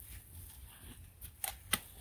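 A quiet pause with a faint, steady low rumble and a few soft clicks in the second half.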